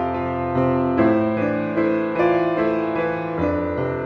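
Solo piano music, a melody whose notes change about every half second over lower sustained notes.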